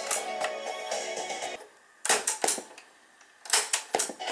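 Music playing from a 1987 Hitachi TRK-W350E twin cassette deck cuts off about a second and a half in. The deck's piano-key transport buttons then clunk several times in two quick groups, and music starts playing again right at the end.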